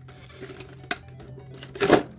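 Clear plastic blister tray being pressed and flexed by hand: a sharp click about a second in and a louder crackle near the end as the plastic gives. Quiet background music underneath.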